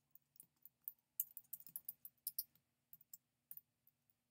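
Typing on a computer keyboard: a quick, uneven run of key clicks, thickest in the middle, with a few single taps near the end.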